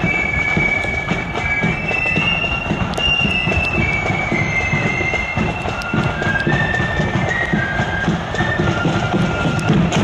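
A marching flute band playing a melody in unison on high, held notes, over the shuffle of marching feet, with the drums starting to beat near the end.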